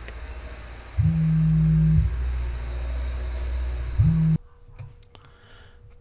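A low, steady droning hum. It jumps up loudly about a second in and holds one pitch, swells again near four seconds, and cuts off suddenly at about four and a half seconds.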